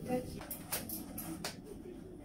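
A few sharp clicks and knocks of objects being handled, about four within a second and a half, after a brief voice at the start.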